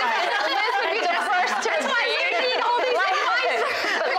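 Speech: several voices talking over one another, with no clear single speaker.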